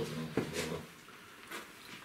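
A few low murmured words in a small room, with one sharp click shortly after the start, then a quiet lull of room tone.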